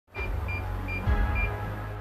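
Electronic door keypad lock beeping with each button press, four short high beeps at uneven intervals, over background music with a steady bass line.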